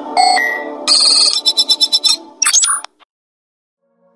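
Electronic computer-interface sound effects: a beep, a fast run of chirping alert beeps and a last burst of chirps over a steady music bed, cutting off to silence about three seconds in.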